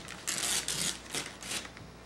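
Paper gift bag and tissue paper rustling and crinkling as they are handled and the tissue is pulled out, in a quick series of about five rustles.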